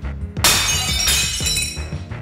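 Crockery shattering: a sudden loud crash about half a second in, a second crash about a second in, and the pieces ringing as they fade near the end. Background music plays underneath.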